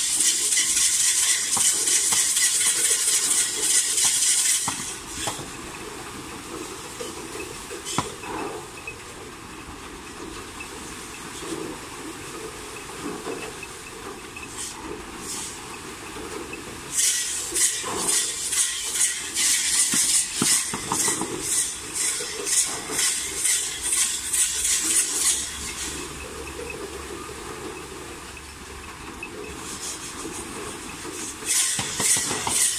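A harnessed bull running laps around a well, with the rig it pulls making a fast rhythmic hissing rattle. The rattle is loud for the first few seconds and again from about 17 s to 25 s, and quieter in between.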